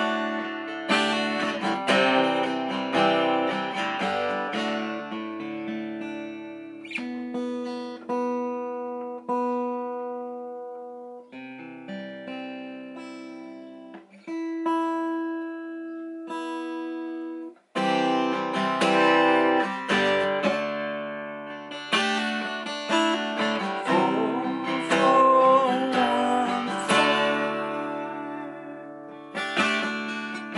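Martin D-18 steel-string acoustic guitar strummed, then picked more softly with notes left ringing. It stops for a moment a little past halfway, then strumming resumes, louder. The player is working through a chord progression picked by rolling a die.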